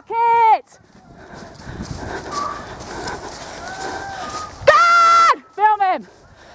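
A pack of foxhounds baying loudly in wavering cries: one at the start, then a long held cry and a quick run of cries near the end. In between come fainter cries further off, and the rustle and thud of someone running over grass.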